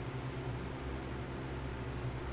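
Room tone in a small room: a steady low hum with faint hiss.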